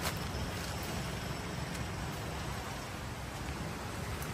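A steady, even rushing noise with no distinct sounds standing out.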